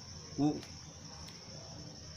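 Faint, steady high-pitched background noise, with one short spoken word about half a second in.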